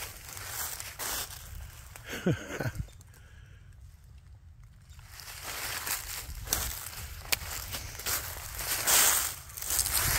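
Footsteps crunching through dry fallen leaves in a series of steps. They stop for about two seconds a third of the way in, then resume, loudest near the end.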